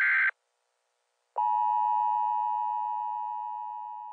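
A short electronic buzz cuts off just after the start; after about a second of silence a steady electronic tone sounds and slowly fades away.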